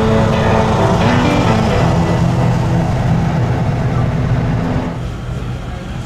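Loud vehicle engine noise, a dense low rumble, mixed with music with sustained notes; both ease off about five seconds in.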